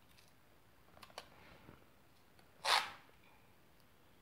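Masking tape being handled on a wall: a few faint taps and clicks, then one short rasp about two-thirds of the way in as a length of tape is pulled off the roll.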